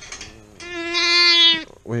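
A lamb bleating once, a single long, steady, high-pitched call of about a second.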